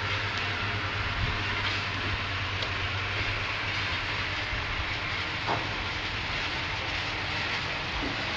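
Steady outdoor background noise: a continuous even rushing hiss over a low hum.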